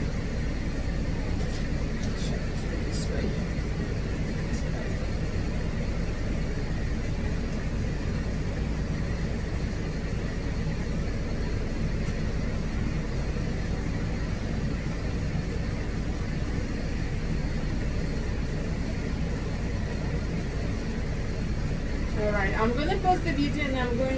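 Steady low machine rumble and hum, running evenly without change.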